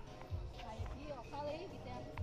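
Faint distant voices and music, with a few soft low thuds.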